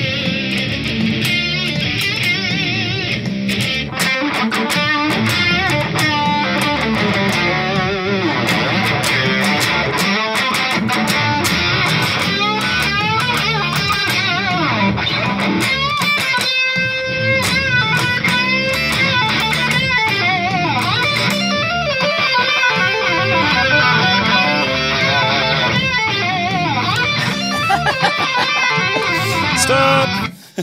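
Electric guitar played through a VoiceLive 3 multi-effects processor, with a recorded looper phrase repeating under a live guitar part that is being overdubbed onto it. The layered loop cuts off suddenly at the very end, when all loops are stopped.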